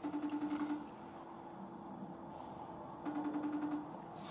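iPhone FaceTime outgoing call ringing: two short rings of a fast-fluttering tone, each under a second long and about three seconds apart.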